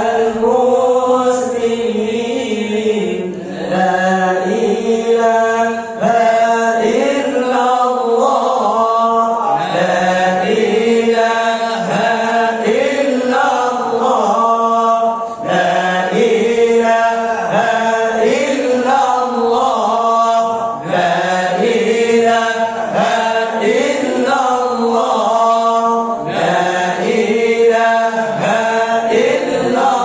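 A group of men chanting Islamic devotional verses (dzikir and sholawat) together, amplified through hand-held microphones, in long sung phrases with brief breaks for breath every few seconds.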